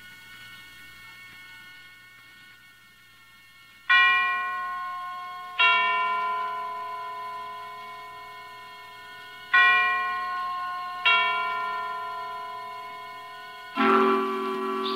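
Chimes in the program's opening music: four struck, ringing tones in two pairs, each pair about a second and a half apart, every strike dying away slowly. A faint held tone comes before the first strike.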